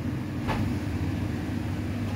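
Steady low hum of a supermarket refrigerated display case, with one short click about half a second in.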